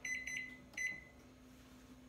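Keypad beeps of an electronic timer being set for 20 minutes: a quick run of about three short, high beeps, then one more just under a second in.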